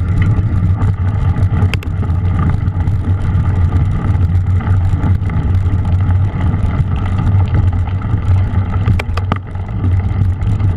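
Mountain bike riding over a wet, muddy, snow-covered trail, heard through an action camera: a steady low rumble of tyres and wind on the microphone, with a few sharp rattling clicks from the bike, two close together near the end.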